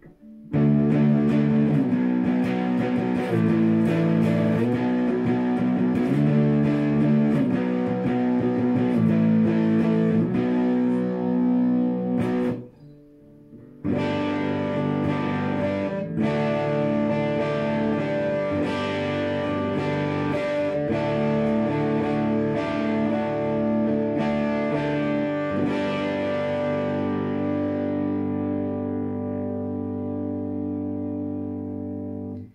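Epiphone SG Custom electric guitar played through a Vox Cambridge 50 amp on its Brit 1959 setting at half gain: chords with a crunchy, overdriven tone. The playing breaks off for about a second around twelve seconds in, then resumes, and the last chord is left to ring and slowly fade.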